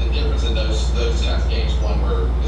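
A loud, steady low electrical hum, the loudest thing throughout, with faint, indistinct speech over it.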